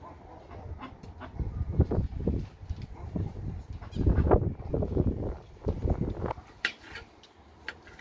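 Knife slicing lemons on a ceramic plate, with a few sharp clicks of the blade against the plate near the end. Louder swells of low rumbling, some with a wavering pitched sound, come and go underneath.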